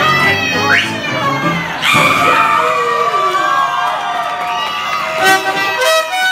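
Live lounge show music with several voices singing and calling out over it, with crowd noise in a large room.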